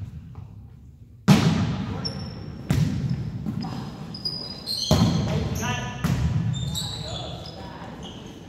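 A volleyball struck four times in a rally, each hit a sharp smack that echoes around the gym. Short high sneaker squeaks on the hardwood floor come between the hits.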